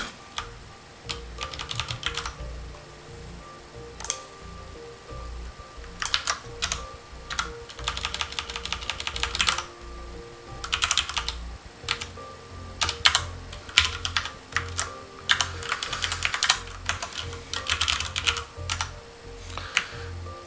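Typing on a computer keyboard: several short bursts of rapid keystrokes separated by pauses.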